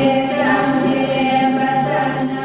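A group of voices chanting in chorus, holding long steady notes. This is the chanted blessing the nuns sing in thanks for their gifts.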